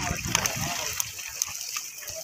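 Water splashing and pouring out of a plastic crate of freshly netted fish as it is hauled up out of shallow water.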